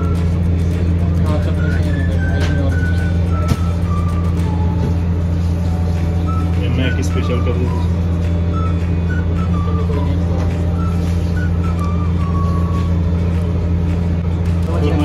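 A loud, steady low machine hum runs throughout, with a faint melody of music in short descending phrases over it.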